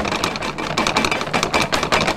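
Digital glitch sound effect: a loud, rapid stutter of clicks and crackle.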